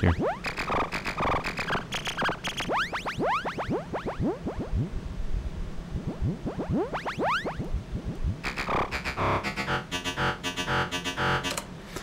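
MDA DX10 software FM synth playing short repeated bass notes from its 'Clunk Bass' preset while its fine-tune control is adjusted. Through the middle, each note's overtones glide in pitch. Near the end comes a quicker run of steady-pitched notes.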